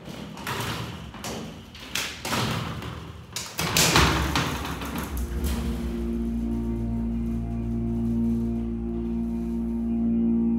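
Freight elevator's sliding hoistway door and mesh gate closing, several rattling strokes with a loud thud about four seconds in. Then the Montgomery hydraulic elevator's pump motor starts, a steady hum, as the car begins to rise.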